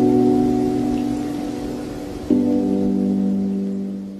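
Closing bars of a slowed, reverb-heavy lofi song: sustained ringing chords, with a new chord struck about two seconds in, over a soft steady hiss. The track is fading out.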